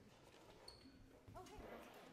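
Near silence: room tone with faint murmured voices and small shuffling noises.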